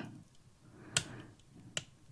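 Two short, sharp plastic clicks, about three quarters of a second apart, from the S-foil wings of a small Jazwares Micro Galaxy Squadron T-70 X-wing toy being swung open by hand.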